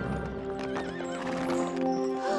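A horse whinnying and hooves clip-clopping, over background music.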